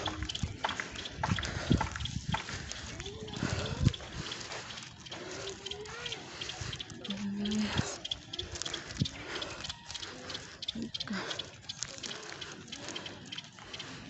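Outdoor walking sounds: irregular footsteps and phone-handling knocks over a noisy background, with faint distant voices.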